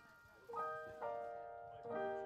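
Stage keyboard in an electric-piano voice playing the opening chords of a slow jazz intro: three chords struck about half a second apart, each left to ring and fade.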